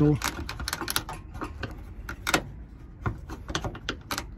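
A pry tool working under a Honda Civic hatchback's roof rain gutter trim, making irregular small clicks and taps as the trim strip is levered up.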